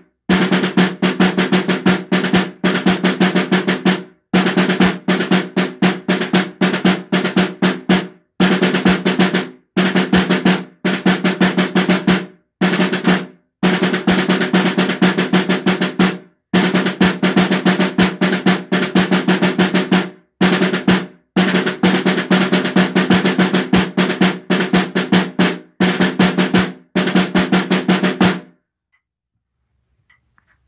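Snare drum played solo: fast runs of strokes and rolls broken by brief rests, ending near the end.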